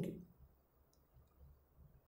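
A few faint, short clicks of a fingertip tapping a phone's touchscreen, against near silence.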